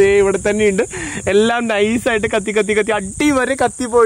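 A man talking, with a steady high-pitched chirring of insects behind him.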